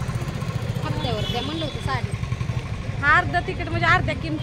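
Women's voices talking in short phrases over a steady low rumble of street background.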